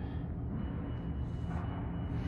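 Steady low machine hum, with a faint thin high tone joining about halfway through.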